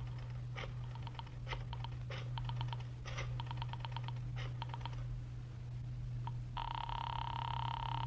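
Telephone being dialled: several runs of quick clicks as the dial turns and returns, then, about a second and a half before the end, a steady buzzing ring tone heard in the earpiece. A low steady hum runs under it.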